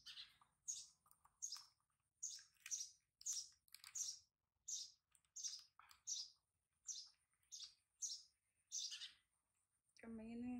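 A run of short, high-pitched chirping calls, each sliding down in pitch, repeated about every two-thirds of a second, about fourteen in all.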